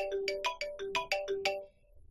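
Mobile phone ringing with a melodic ringtone: a quick run of bright notes that stops near the end.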